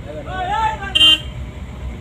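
Steady low rumble of a car driving, heard from inside the cabin, under a voice, with a short sharp burst about a second in.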